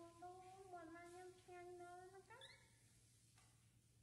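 A baby monkey's faint, drawn-out whimpering cry, held at one pitch in a few stretches, then rising sharply and stopping about two and a half seconds in.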